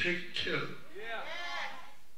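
Soft speech: a voice in drawn-out, wavering syllables.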